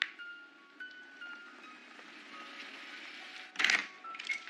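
Soft music score of single chime-like mallet tones, fading away. Near the end comes one short, loud rushing burst, the front door being pulled open.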